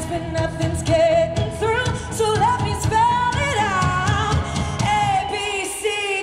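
Female lead vocalist singing live through a microphone over an amplified pop-rock band. The band's low end drops away briefly near the end while the voice carries on.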